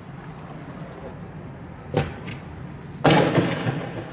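Two explosive bangs during street clashes: a sharp crack about two seconds in, then a louder blast about a second later that echoes and dies away over most of a second.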